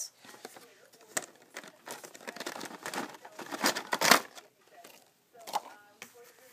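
Rustling and scraping of a cardboard jewelry box being handled and opened, in irregular bursts with the loudest scrapes about four seconds in.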